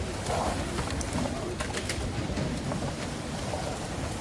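Field sound of riot police clearing a tent camp: plastic sheeting rustling and a few sharp clatters around the middle, over a steady low rumble.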